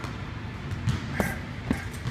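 Three short, sharp thuds in the second half, over a low rumble of room noise.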